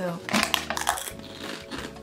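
Pringles crisps can being opened by hand, its plastic lid coming off: a short crackling, rattling burst about half a second in, lasting under a second.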